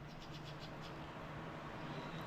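Faint mouth sounds of someone licking and tasting peanut cream off a small lid: a quick run of soft clicks in the first second, then quieter smacking.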